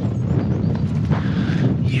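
Strong wind buffeting the microphone outdoors, a loud, unsteady low rumble.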